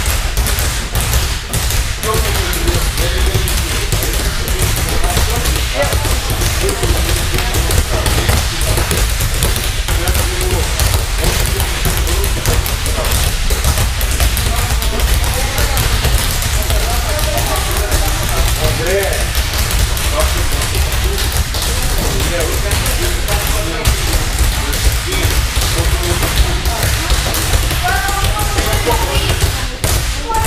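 Several rubber balls being dribbled on judo mats by a group of children: a continuous, irregular patter of dull bounces, with voices in the background.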